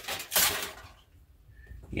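Aluminium foil crinkling as it is peeled off a mixing bowl, for about the first second.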